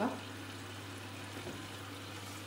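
Front-loading washing machine just started and filling with water: a steady low hum with a faint, even hiss of running water.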